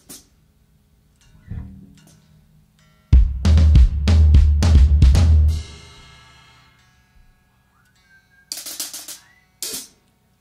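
A rock band's drum kit: a single thump, then about two and a half seconds of heavy kick and snare hits over a deep low rumble that rings away. A few short, hissy cymbal hits come near the end. It is a brief burst of playing between songs, not a song under way.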